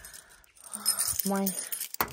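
A bunch of keys jingling at the lock of a steel entrance door, with a man saying a single word partway through.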